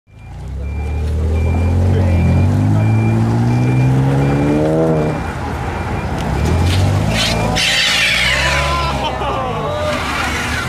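A lowered car's engine revving with a steadily rising pitch for about five seconds, then running lower and steadier. From about seven and a half seconds, loud crowd voices and shouts join in.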